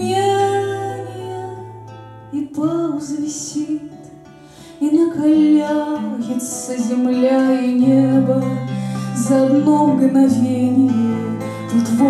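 A woman singing to a strummed twelve-string acoustic guitar. A held note fades over the first couple of seconds and the music drops low around four seconds in, then voice and guitar come back in full.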